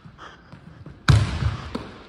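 A basketball bouncing once hard on a hardwood gym floor about a second in, a sudden thud that rings out in the big hall, followed by a fainter knock.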